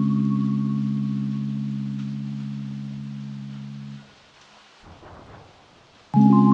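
Background ambient music: a held synthesizer chord slowly fading away, dying out about two-thirds of the way through, followed by faint hiss.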